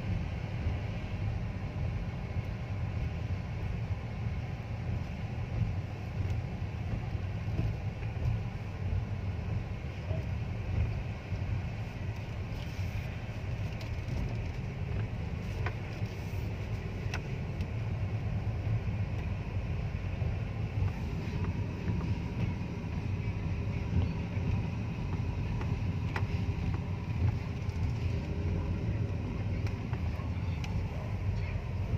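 Car interior noise while driving: a steady low rumble of engine and tyres on the road, heard from inside the cabin, with a few faint clicks.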